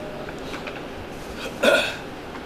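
A pause in a hall with low room noise, then one short, sharp vocal sound from a person near the end.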